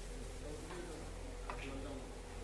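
A single sharp click of a carrom striker on the board about one and a half seconds in, over low background voices.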